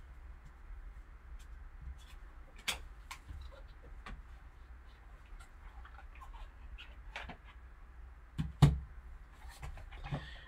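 Gloved hands handling and opening a cardboard trading-card box: light scraping and rustling with scattered taps and knocks, the sharpest about two and a half seconds in and a louder pair near the end.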